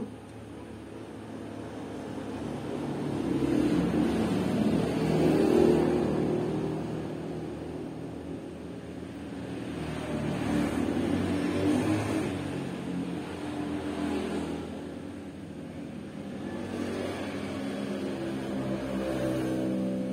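Motor vehicle engines passing, the sound swelling up and fading away three or four times.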